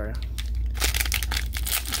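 Cellophane wrapper of a trading-card cello pack crinkling as hands handle it and work it open: an irregular run of quick crackles.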